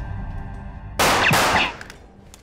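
Film sound effect of a sniper's rifle shot through a window: about a second in, a sudden loud crack with breaking glass that dies away in well under a second, as background music fades out.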